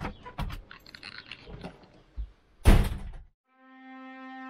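A few light knocks and steps, then one loud, heavy thunk about two and a half seconds in: a door shutting. After a brief dead silence, music with held horn notes begins just before the end.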